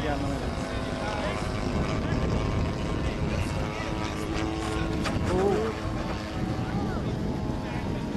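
Radio-controlled model airplane engine running steadily with its propeller, over a low haze, with people's voices talking faintly now and then.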